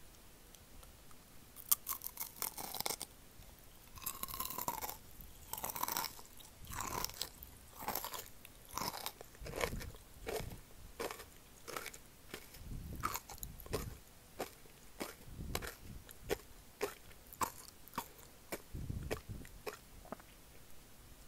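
A person biting into and chewing kohakutou (crystallised agar candy) pretzels close to the microphone. The sugar crust crunches and crackles with each chew, starting about two seconds in and repeating about once or twice a second.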